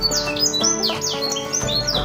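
Domestic canaries chirping: a quick run of short, high, falling chirps, several a second, over background music with held notes.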